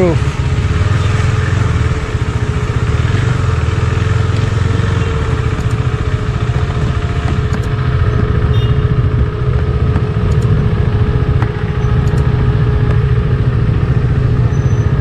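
KTM motorcycle engine running steadily at low speed, with a constant deep rumble and a faint steady tone above it.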